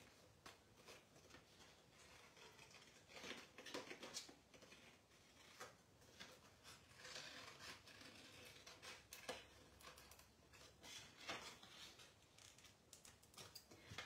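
Faint, irregular snips of small craft scissors cutting a printed leaf out of a sheet of paper cutouts, with paper rustling as the sheet is handled.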